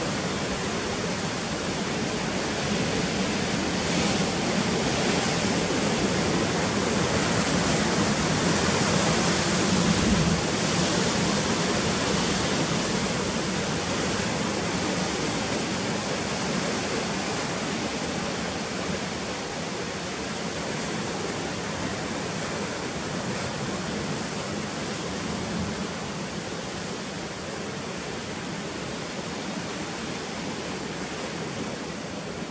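Heavy surf breaking and churning against rocks, a continuous rush of white water that grows louder around ten seconds in and then slowly eases off.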